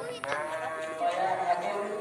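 One long bleating call from a sacrificial livestock animal, starting a moment in and lasting about a second and a half.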